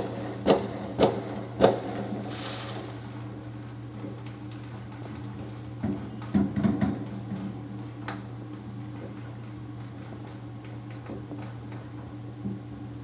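Distant fireworks: a quick run of sharp pops in the first two seconds and a short hiss, then another cluster of pops about six seconds in, over a steady low hum.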